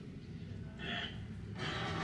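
Quiet breath sounds close to the microphone: a short puff about a second in and a longer breathy stretch near the end, over a low steady rumble.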